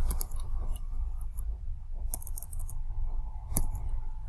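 Computer keyboard keys clicking in short, irregular runs as a new password is typed, over a low steady background rumble.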